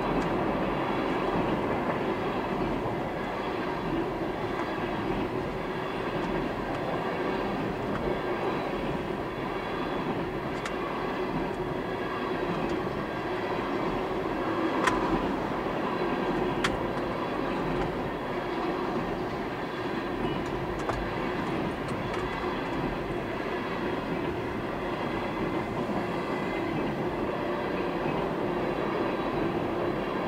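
Freight train of tank cars rolling past at about 35 mph: a steady rumble and rattle of steel wheels on the rails, with a couple of sharp clicks about halfway through.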